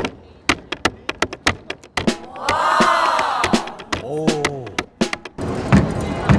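A hand slapping the wooden front panel of an upright piano as a snare drum, sharp slaps at about four or five a second through the first two seconds. Then come drawn-out voices calling out in rising-and-falling tones, and near the end denser piano playing begins.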